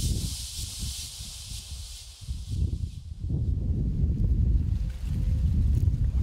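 Wind buffeting the microphone, a low uneven rumble that grows stronger after a couple of seconds. Over the first three seconds there is also a high, hissing rustle of dry sorghum heads in the wind, which then fades away.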